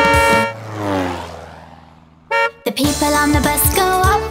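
Cartoon sound effects between verses of a children's song: the music stops and a tone slides down in pitch and fades away, then a short horn toot sounds about two seconds in, and the bouncy music starts again.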